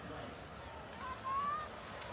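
Faint steady background noise with a brief distant voice calling out about a second in, its pitch rising.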